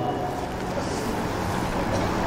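Steady background noise in a pause between spoken phrases, with a brief rustle about a second in.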